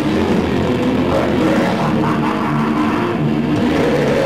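Metalcore band playing live: heavily distorted electric guitars and bass over drums, loud and dense, with low held notes.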